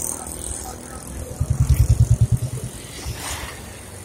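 Street traffic, with a vehicle's engine passing close by: a low, rhythmic putter for about a second in the middle, over a steady background of road noise.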